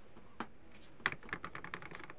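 A fast run of small, even clicks, about ten a second, from the detented main volume knob of a Pioneer SA-570 stereo amplifier being turned by hand, after a single click about half a second in.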